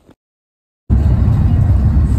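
Dead silence for most of a second, then a loud, steady low rumble of a car on the move, heard from inside the cabin.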